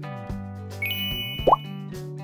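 Background music with an on-screen pop-up sound effect: a sparkly chime a little before the middle, then a short rising 'bloop' about three quarters of the way in, the loudest sound.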